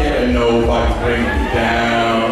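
A man's voice through a live PA microphone, holding long sung notes that bend in pitch, over the bass of a backing track.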